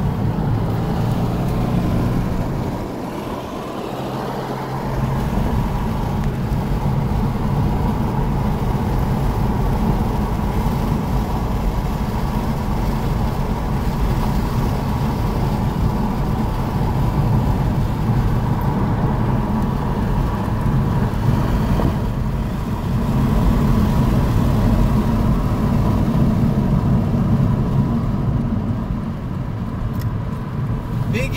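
Car engine and tyre noise heard from inside the cabin at track speed, a steady rumble with a thin whine above it. It drops off about three seconds in, then builds again and runs louder for a few seconds near the end.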